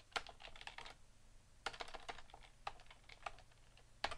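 Faint typing on a computer keyboard: a cluster of keystroke clicks near the start, another cluster around the middle, then a couple of single key clicks.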